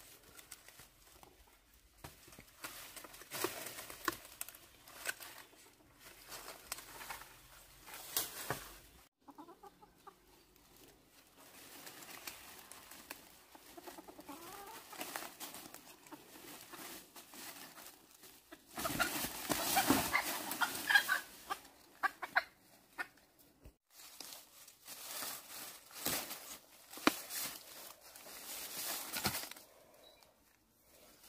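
A rooster clucking as it is caught and held by hand, amid rustling of dry bamboo leaves underfoot. The loudest flurry of rustling and calls comes about two-thirds of the way through.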